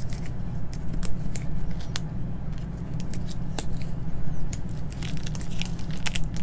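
Clear vinyl transfer tape being peeled slowly off vinyl lettering on a painted wooden block, giving small scattered crackling ticks as the adhesive lets go, thicker near the end. A steady low hum runs underneath.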